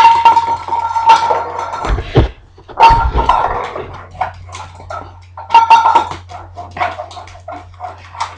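Empty tuna can knocking and scraping across a vinyl tile floor as a dachshund noses it along, each knock ringing with a metallic tone, in repeated clusters of clatter. A few dull thumps about two to three seconds in.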